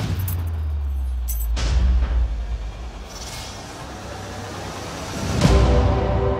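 Trailer sound design: a deep rumbling low hit that fades after about two seconds, a quieter stretch, then a loud boom near the end.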